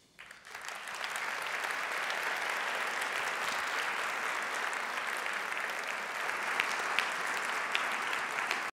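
Audience applauding, the clapping swelling over the first second and then holding steady.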